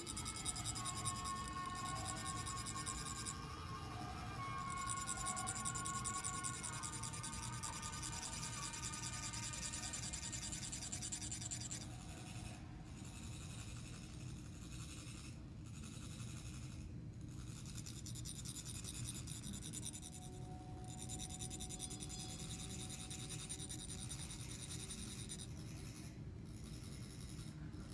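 Metal chak-pur funnels rasped with a rod to trickle coloured sand onto a sand mandala: a continuous scraping buzz with a faint metallic ring, growing softer and more broken about halfway through.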